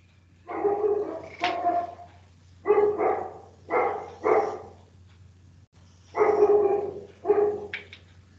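A dog barking repeatedly, about seven loud barks, with a pause of over a second near the middle.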